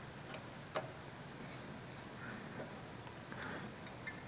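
Faint metal clicks of a hex key being fitted into a socket-head screw and turned to tighten the V-block clamp: two sharp clicks in the first second, then a few softer taps.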